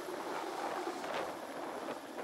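Air Force NH90 helicopter lifting off and climbing away, its rotor and engine noise a steady rush that slowly fades.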